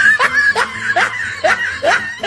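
A person laughing, snickering in quick repeated bursts that each rise in pitch.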